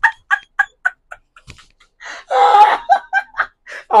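A man laughing hard: a quick run of short "ha-ha" bursts, about four or five a second, then after a brief pause one longer, louder burst of laughter, followed by a few more short bursts.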